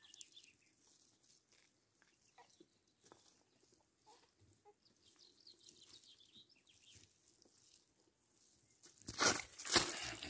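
Mostly quiet outdoor ambience with faint scattered small sounds. About nine seconds in comes loud rustling and crunching from footsteps in sandals through grass and dry ground, with the camera being jostled.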